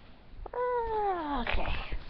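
A single drawn-out cry that falls steadily in pitch over about a second, followed by rustling and handling noise.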